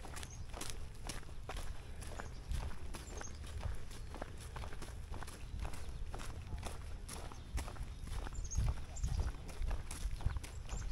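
Footsteps of two people walking on a sandy, gravelly park path, a steady run of crunching steps, over a low rumble on the microphone.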